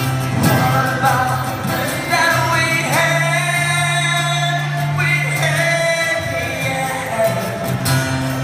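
A live rock band playing a ballad: a sung vocal line with long held notes over acoustic guitar and drums.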